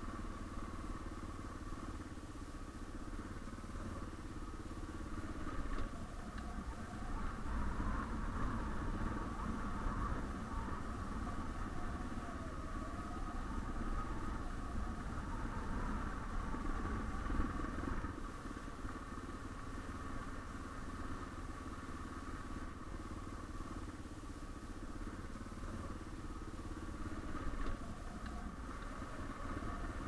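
Suzuki DR650's single-cylinder engine running at a steady pace while the bike is ridden along a gravel road, with a continuous low rumble beneath it.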